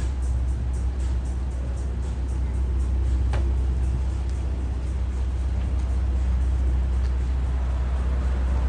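Steady low rumble of downtown street ambience with a faint hum of traffic. Faint music with a regular ticking beat fades away over the first few seconds.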